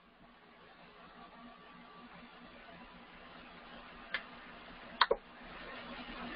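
Computer mouse clicks over faint hiss: a single click about four seconds in, then two quick clicks a second later.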